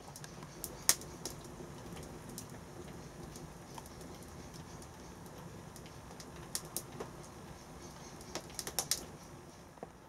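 Wood fire crackling in a perforated metal drum fire pit: irregular sharp pops and snaps, with a quick cluster of them near the end, over a low steady rush.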